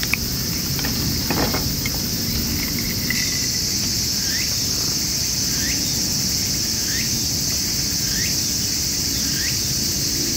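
Steady high-pitched chorus of insects, with a short rising chirp repeating about once a second from a few seconds in. A few light clicks come in the first second or so.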